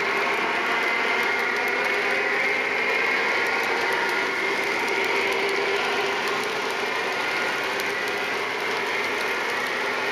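O-gauge model freight train hauled by a Lionel GE hybrid locomotive running on three-rail track: a steady whir of motor and gears with the rolling of many cars' wheels and faint irregular clicking.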